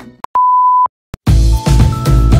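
Electronic beep: a single steady pure tone about half a second long, sounding between two pieces of music. Background music with a beat begins a little over a second in.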